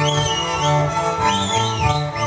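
Live Slovak folk string band music: fiddles playing over a bass line that moves between two low notes in an even dance rhythm, with high sliding pitches rising and falling on top.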